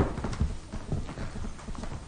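Footsteps of hard-soled shoes on a polished wooden parquet floor: a steady run of sharp heel clicks as a man walks across a room, stopping near the end.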